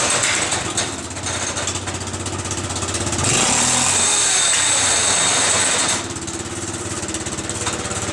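Yamaha Rhino UTV's single-cylinder engine and drivetrain running as the vehicle is driven a short way. It gets louder, with a harsh high hiss, from about three seconds in until about six seconds, then drops back. This is the unrepaired vehicle's drivetrain noise.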